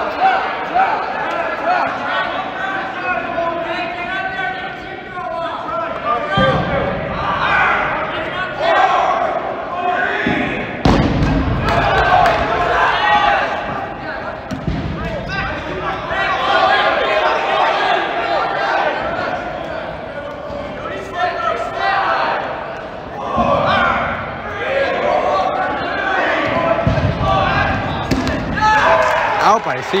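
Dodgeballs being thrown and bouncing off the gym floor and walls during a dodgeball game, with several heavy thuds, under players' shouts and chatter that echo in a large gymnasium.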